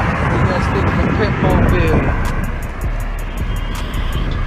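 Wind rushing over a phone microphone and rumbling road noise while riding a handlebar vehicle along a street, with a few brief vocal sounds from the rider.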